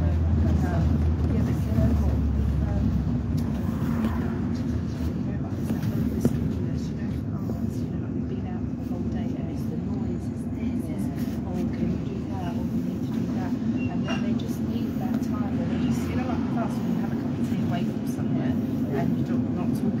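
Bus interior while moving: a steady low engine and road rumble, with muffled voices of people talking in the background.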